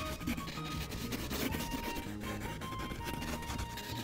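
A yellow wax crayon is scribbled rapidly back and forth on a coloring-book page, making a continuous run of short, scratchy strokes.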